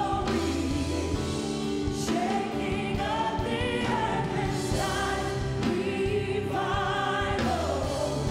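Live gospel worship song: a woman leading with several backing singers in harmony over band accompaniment with sustained low notes.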